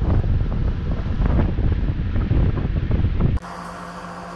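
Wind buffeting the microphone on the deck of a moving boat, over the rush of water. Near the end it cuts abruptly to a quieter steady low hum.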